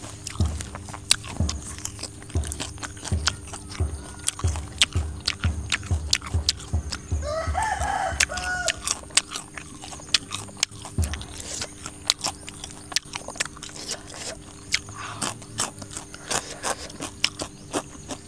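Close-up eating sounds of meatballs and raw greens being chewed: many wet clicks and crunches with soft, regular jaw thumps through the first half. A chicken calls once, briefly, about seven seconds in.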